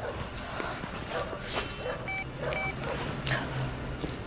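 Two short electronic beeps from a mobile phone's keypad as a number is dialled, about two seconds in and half a second apart, among faint rustles and a low hum.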